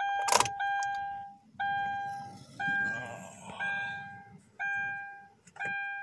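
Kia Rio's dashboard warning chime: an electronic bell-like tone repeating about once a second, each ding fading out, as the key goes into the ignition. Key clicks and jingles at the ignition barrel sound near the start.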